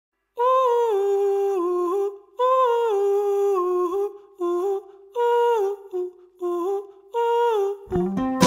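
A solo high voice humming a wordless melody in about six short phrases separated by brief pauses, each phrase stepping down in pitch, as the opening of a song.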